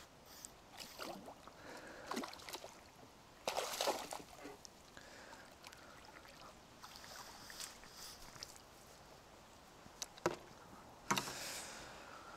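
Quiet splashing and sloshing of water at the bank as a carp is slipped back out of the landing net, in a few short bursts, the loudest about four seconds in, with a sharp click near the end.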